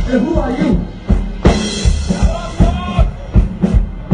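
Live rock band playing through a stage PA: drum kit with a steady kick and snare, electric guitar and bass, and a singer's voice. The band drops back briefly about a second in, then comes back in hard with a crash.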